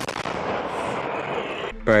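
A 155 mm Bohdana self-propelled howitzer firing one round: a sharp report right at the start, followed by a long rolling rumble of the blast that fades out after about a second and a half.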